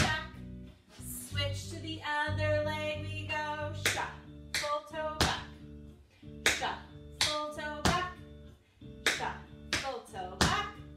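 Tap shoes striking a hardwood floor in shuffle steps, sharp clicks coming in quick pairs and small groups over background music. The taps pause between about one and four seconds in while the music holds on.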